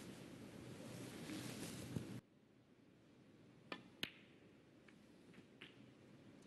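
A faint hushed hall tone that cuts off abruptly after about two seconds. Then two sharp clicks of snooker balls about a third of a second apart, followed by a few faint ticks.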